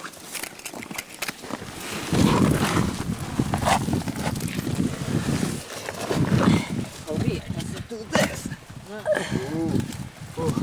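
Rumbling and scuffing handling noise from a hand-held camcorder carried while climbing down loose rocks, loudest in two patches about two and six seconds in, with a brief voice near the end.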